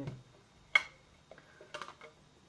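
Handling the cylindrical tube box of Versace Blue Jeans perfume as it is opened and the bottle slid out. A single sharp click comes about three-quarters of a second in, followed by a few faint taps and ticks.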